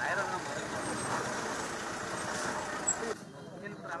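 Motor vehicle engine running, with scattered voices of people over it; the sound stops abruptly about three seconds in.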